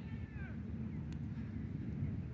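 A child's high-pitched shout, falling in pitch and lasting about half a second, at the start, with a sharp short tap about a second in, over a steady low outdoor rumble.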